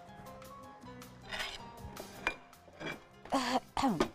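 A few light clinks of kitchen utensils against bowls and dishes, over quiet background music.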